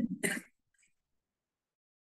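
A man's speech breaks off and he gives one brief throat clearing.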